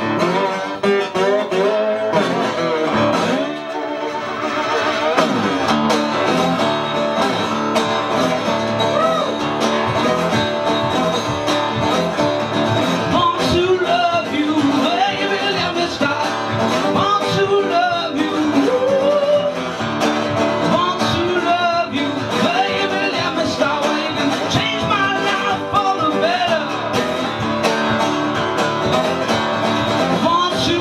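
A man singing live to his own strummed acoustic guitar.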